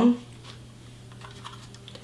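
Faint light clicks and taps of plastic makeup packaging being handled, over a steady low hum.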